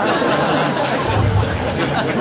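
A live audience in a hall chattering and laughing together in reaction to a joke.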